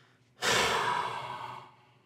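A person's long, heavy sigh: one breathy exhale starting about half a second in and fading away over just over a second.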